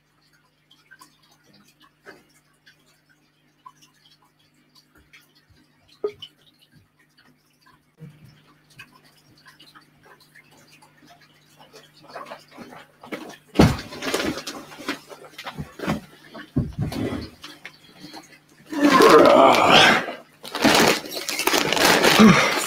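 A quiet room with a faint steady hum, then knocks and handling noise building toward the end, finishing in loud rustling of a large plastic bag of soil substrate being carried and handled.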